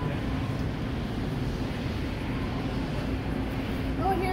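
Steady background noise of a large store, with a faint low hum and no distinct events.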